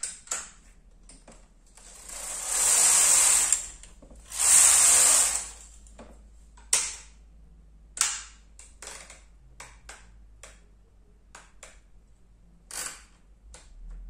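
Brother KH930 knitting machine carriage pushed across the needle bed twice, each pass lasting about a second and a half. After the passes come a string of separate sharp clicks from the machine.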